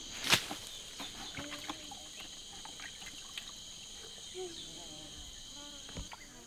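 Steady, shrill chorus of insects, with a single sharp knock just after the start and a few faint clicks.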